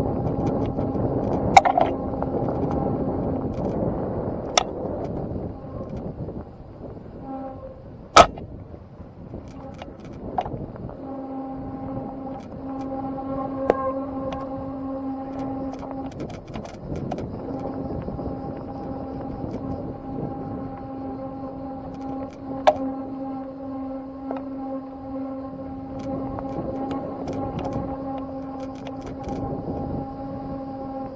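Bicycle rolling down a dirt forest trail: steady tyre and trail noise, with a humming whine that cuts out for several seconds early on and then comes back. Several sharp knocks over the rough ground stand out, the loudest about eight seconds in.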